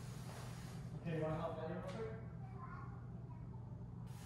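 Faint voice talking briefly from about a second in, off in the background, over a steady low hum, with a single click partway through.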